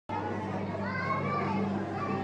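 Children's voices calling and chattering, with high pitch glides, over a steady low hum.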